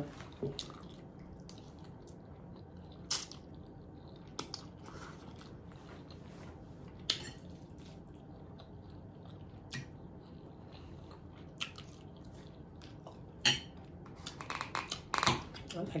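A person chewing spaghetti close to the microphone, with scattered short, sharp mouth clicks and smacks that come thicker near the end.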